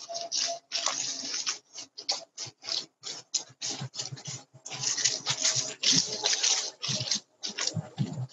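Footsteps crunching on mulch and dry grass, with rustling handling noise on a phone microphone, picked up through a video-call link that chops the sound into irregular short bursts.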